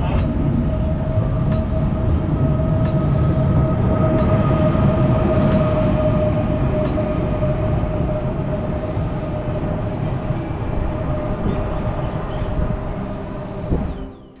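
Afrosiyob high-speed electric train (a Talgo 250) pulling out of the station: a steady rumble of wheels and running gear with a steady whine over it, fading gradually over the last few seconds as the train draws away.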